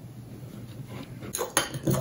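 Low room noise, then from about a second and a half in, a quick run of clicks: a metal fork striking a ceramic bowl as beaten egg and grated pecorino are whisked together.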